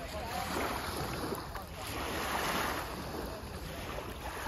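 Shallow water washing and sloshing along the shore in rising and falling surges, with wind on the microphone.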